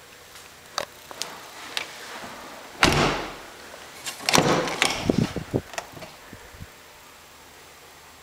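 Crew-cab pickup truck doors being worked by hand: a few light clicks, then a door shutting about three seconds in, the loudest sound, followed by a cluster of latch clicks and knocks as the rear door is opened.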